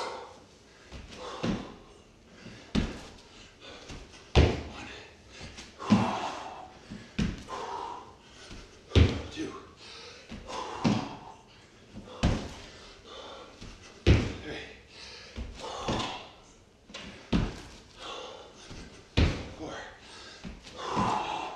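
Repeated thuds of hands and feet hitting a hardwood floor during burpees with a push-up, about one every second and a half, with hard breathing between the thuds.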